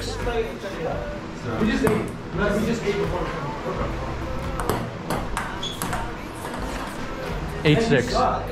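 Table tennis ball clicking off paddles and the table at irregular intervals as a point is played, with people's voices underneath.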